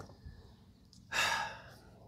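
A person's short breathy sigh, one exhale lasting about half a second, beginning about a second in.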